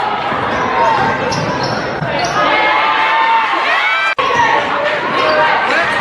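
Live basketball game sound echoing in a gym: a ball dribbling on the hardwood court, sneakers squeaking, and players and spectators calling out. The sound drops out for an instant about four seconds in, where two game clips are spliced together.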